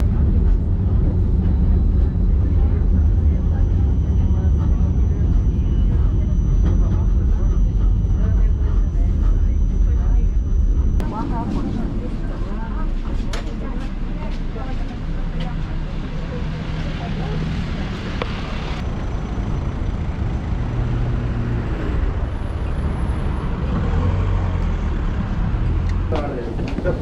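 Ride inside a low-floor electric tram: a loud, steady low rumble with a faint steady high whine. About 11 seconds in it cuts abruptly to lighter ambience of people's voices and city traffic.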